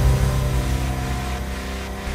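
Low, steady drone of a cinematic logo sting, slowly fading.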